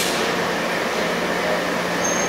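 Steady hum of running industrial machinery, with a low steady tone under an even wash of noise, and a single sharp click right at the start.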